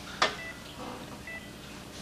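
Hospital patient monitor giving its heart-rate beep, a short high tone about once a second. A brief sharp sound comes just after the start.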